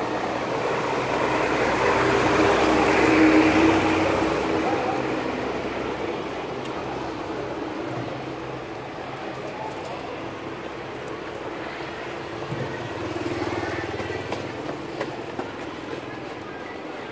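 A tanker truck's engine passing on the street, growing louder to a peak about three seconds in and then fading, leaving steady traffic noise.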